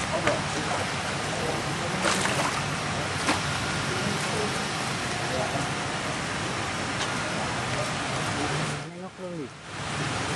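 A steady hiss of outdoor background noise with faint voices in the background; it dips briefly near the end.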